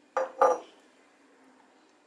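Two quick clinks of glass containers knocked against each other or the countertop, about a quarter second apart.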